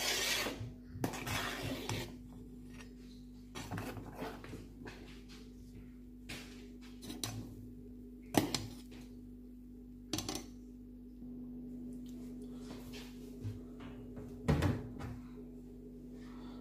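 Metal spoon clinking and scraping against a large aluminium pot while milk is stirred as it curdles, in a few scattered knocks over a steady low hum.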